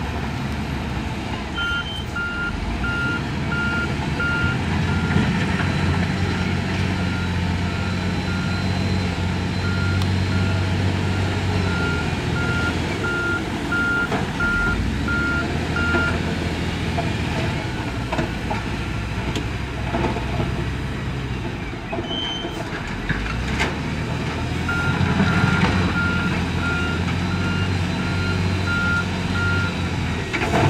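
Heavy construction machine's reversing alarm beeping steadily over the running diesel engines of a wheel loader and dump truck. The beeping stops about halfway through and starts again near the end, with a few short knocks in between.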